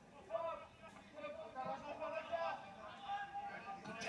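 A man's voice commentating from a television football broadcast, heard through the TV's speaker.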